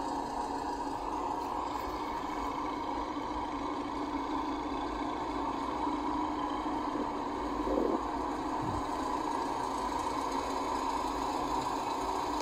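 A steady mechanical hum with two held tones and a low rumble beneath, unchanging throughout.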